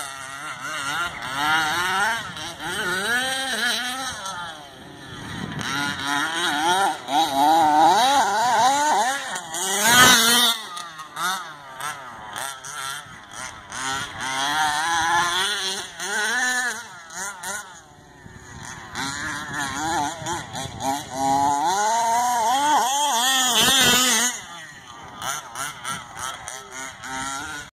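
HPI Baja 5T's Zenoah G320 two-stroke engine, breathing through a DDM V2 expansion pipe, revving up and down over and over as the truck is driven. There is a sharp knock about ten seconds in.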